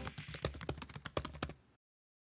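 Computer keyboard typing sound effect: a quick run of about a dozen key clicks over a second and a half, then it stops suddenly.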